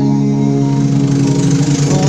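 Karaoke backing track playing loud through the sound system: a steady held chord over a bass line, with little or no sung voice until a sung line comes in near the end.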